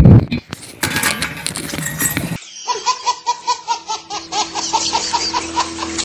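A loud thump at the start and a couple of seconds of noise, then a baby laughing in a long run of short giggles, about three a second.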